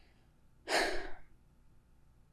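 A woman's sigh: one breathy exhale, about half a second long, a little over half a second in.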